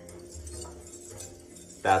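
Wire whisk stirring a thickening flour-and-milk paste in a steel saucepan, with faint clinks against the pan, as the paste turns to a pudding-like consistency. Soft background music with held notes plays under it.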